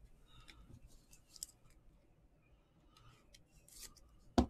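Faint plastic rustles and light clicks of a sleeved trading card being handled and fitted into a clear rigid plastic card holder, with a short scrape about a second and a half in and another near the end.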